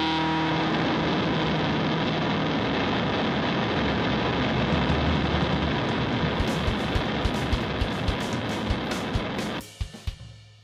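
Garage punk band's song ending in a wash of distorted guitar noise, with loose drum hits coming in about two-thirds of the way through at roughly three a second. The band stops abruptly near the end and the sound rings away.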